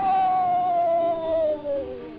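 Cartoon sound effect for an electric shock: one long wail that slides steadily down in pitch over about two seconds, over background music.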